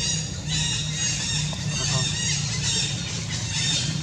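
A macaque squealing in a run of short, high-pitched calls, about two a second.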